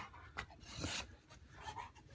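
Faint panting of a Rottweiler, with a brief soft click about half a second in.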